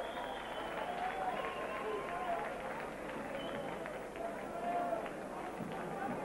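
Arena crowd noise: many voices talking and calling out over one another, with no single voice standing out.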